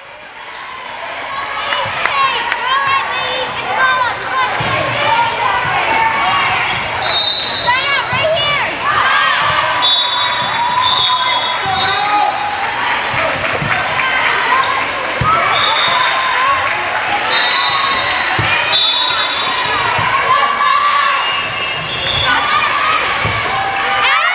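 Many girls' voices in a gym calling, chanting and cheering over one another, with scattered thumps of the volleyball being bounced and hit.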